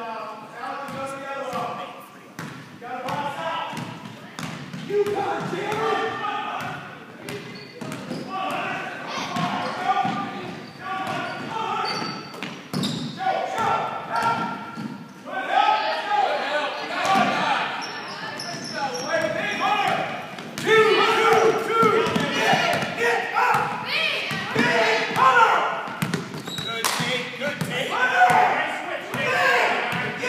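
A basketball bouncing on a hardwood gym floor in short sharp knocks, with indistinct voices of players and spectators talking and calling out over it in a large hall.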